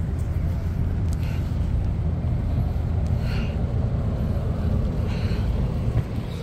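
Steady low rumble of outdoor city ambience, with faint voices of passers-by breaking through twice.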